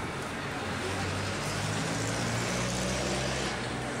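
Busy street noise with a motor vehicle's engine humming close by, strongest from about a second in until shortly before the end, over a steady wash of background voices.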